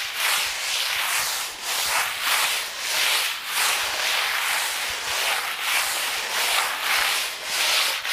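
Coarse hand float (desempoladeira) scraping over fresh cement render on a wall in quick back-and-forth strokes, about two to three a second. This is the float pass that breaks up the screeded surface and leaves it rough, to give the wall covering better adhesion.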